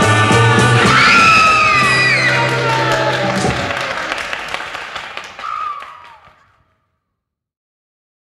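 Closing bars of an early-1960s beat group's rock-and-roll recording: the full band holds a chord while a high voice cries out, rising about a second in and then sliding down. The music then fades away and stops about six and a half seconds in.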